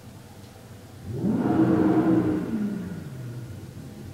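A motor vehicle driving past. Its engine swells and rises in pitch about a second in, peaks, then drops in pitch and fades away. Under it is a steady low hum.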